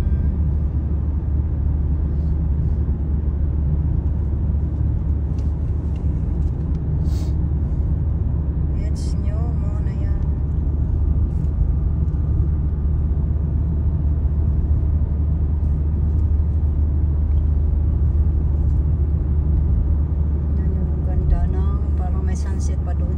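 Steady low rumble of a car's engine and tyres on the road, heard from inside the cabin while driving, with a couple of brief clicks partway through.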